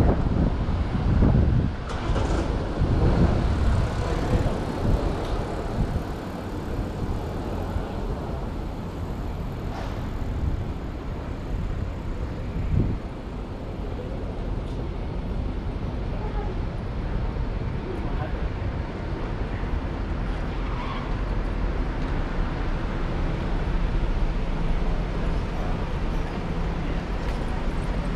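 City street ambience: a steady wash of traffic and passing cars, with passersby talking. It is louder and rumbling in the first few seconds.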